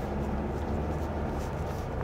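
Steady low rumble of a Kia K5's engine and tyres, heard from inside the cabin as the car drives up a parking-garage ramp.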